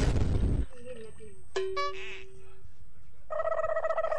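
Edited-in comedy sound effects. A loud noisy whoosh opens, then a click and a steady tone about a second long, then a held musical note near the end.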